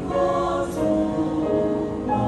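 Mixed church choir singing a hymn in several-part harmony, held notes moving from chord to chord, with a sung 's' hiss about two thirds of a second in.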